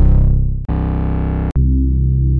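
Bass samples from a trap sample kit played one after another, each low, sustained note cut off abruptly by the next: once about two-thirds of a second in and again about a second and a half in.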